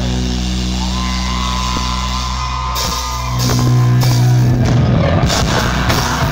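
Live rock band playing an instrumental passage: electric guitars and bass hold low notes while a high guitar note slides up and is held. About halfway through the band gets louder, and drums and crashing cymbals fill in near the end.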